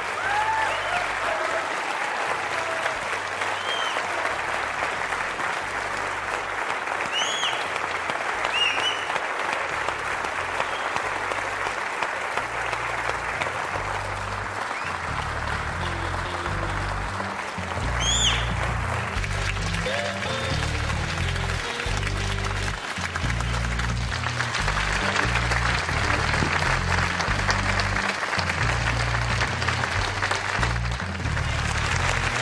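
Audience applauding and cheering, with a few sharp whistles, over music with a rhythmic bass line that grows louder about halfway through.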